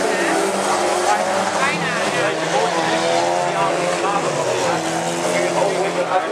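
Engines of several stock autocross cars racing on a dirt track, revving up and down in pitch, with a voice heard alongside.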